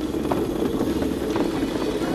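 Electric Crazy Cart drift kart running and sliding sideways across the floor in a drift: a steady drone with a few faint clicks.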